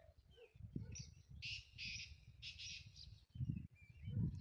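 Small birds chirping in quick runs of calls for a couple of seconds midway, over a low rumble of wind or handling noise on the microphone.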